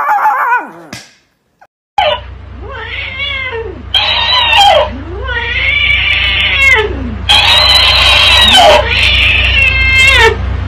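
A chihuahua howls with a wavering pitch that falls away and stops about a second in. After a short silence, a cat meows and yowls in long rising-and-falling calls at a talking-hamster toy, which answers with higher-pitched replays in between, all over a low steady hum.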